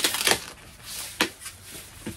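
Plastic comic bags and cardboard backing boards being handled and pulled open: a burst of rustling and crinkling at the start, then a sharp click a little over a second in.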